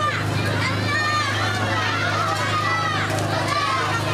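Many children shouting and calling out at once in a crowd, their voices overlapping, over a steady low engine hum.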